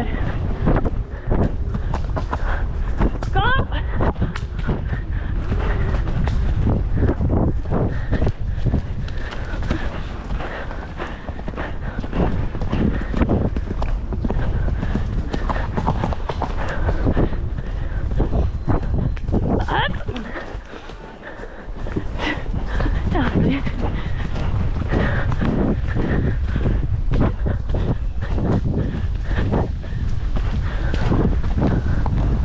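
A horse's hoofbeats on a dirt and grass cross-country track, heard from the saddle with a low rumble of wind on the microphone. The hoofbeats break off briefly about two-thirds through, then resume.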